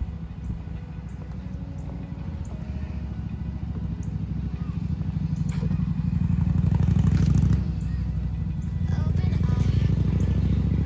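Motorcycle engine running with a low, pulsing exhaust note, growing louder over several seconds as it approaches, with a short dip about seven and a half seconds in.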